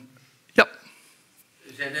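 A man coughs once, short and sharp, about half a second in, and then speech resumes near the end.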